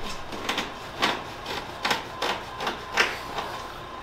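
Video rewind sound effect: a run of quick, irregular clicks and scratches, about ten in four seconds.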